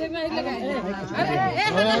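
Several people talking at once, voices overlapping in lively chatter.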